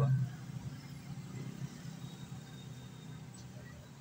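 Faint, steady low background hum with a light hiss that slowly fades.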